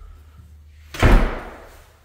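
A door slamming shut about a second in: one heavy thud that dies away over about half a second.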